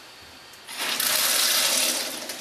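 Kitchen faucet turned on about two-thirds of a second in, water then running steadily into a stainless steel sink, flushing bleach-shocked well water through the house's pipes.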